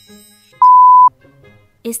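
A single pure bleep tone, like a censor bleep, held steady for about half a second and starting about half a second in. It is loud and plays over a faint music bed.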